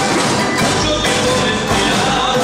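Live Latin American folk group playing, with percussion and drums sounding through dense, steady music.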